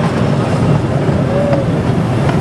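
Casey Jr. Circus Train cars running along the track, a steady low rumble.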